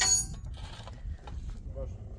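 A sharp, loud clink with a brief high ring right at the start, from work on a concrete-block wall, then faint scattered knocks.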